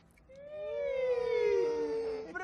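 A voice holding one long, high note that slides slowly down in pitch: a teasing drawn-out vocal reaction.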